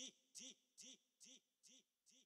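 Faint looped vocal chop in a DJ remix: a single sung syllable, "di", repeated evenly about twice a second, each one rising and falling in pitch. It grows steadily quieter as the mix fades out.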